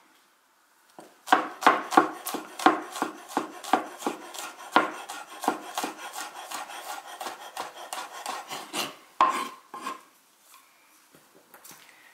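Chef's knife mincing garlic on a wooden cutting board: a run of quick knocks of the blade on the board, about three a second, starting about a second in and stopping just before ten seconds.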